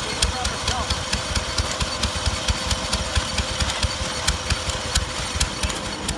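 A small engine running at a steady beat, driving an old belt-driven hopper machine through a long flat belt, with sharp regular clicks about twice a second.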